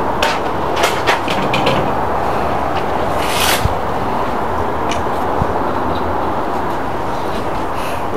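Oysters on the half shell sizzling and bubbling on a charcoal kettle grill, a steady hiss. A few light clicks come in the first couple of seconds, and a brief louder hiss about three and a half seconds in.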